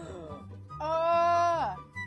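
A woman's drawn-out vocal 'ehhh', held on one pitch for about a second and dropping away at the end, over background music with a steady bass line.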